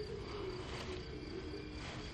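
Faint, steady chirring of crickets in the grass.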